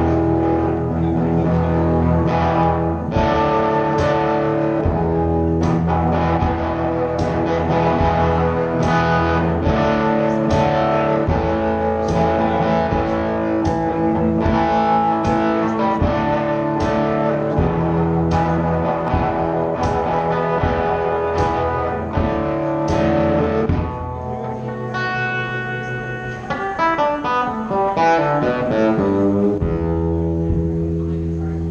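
Live solo electric guitar instrumental, plucked notes ringing over a steady low bass line. Near the end it plays a fast run of notes stepping down the neck.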